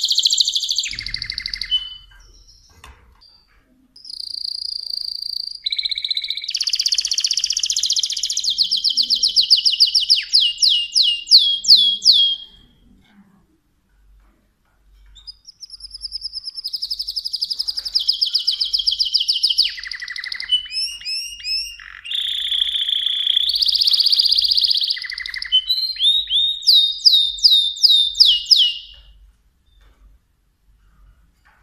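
Mosaic canary singing in long phrases of trills and fast repeated notes, each phrase ending in a run of quick downward-sweeping notes. There are short pauses about two seconds in and again around thirteen seconds.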